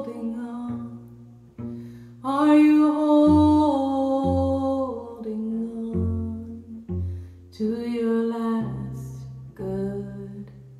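A woman singing a slow song to her own cello accompaniment: low cello notes, one every second or so, under two long held sung lines, the second shorter and toward the end.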